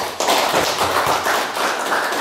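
An audience applauding, the clapping starting suddenly and then running on steadily.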